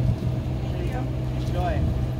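Steady low engine hum from a parked food truck running, with short snatches of speech about a second in and near the end.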